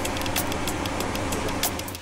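A steady low engine hum, like heavy machinery idling, with many sharp irregular clicks over it.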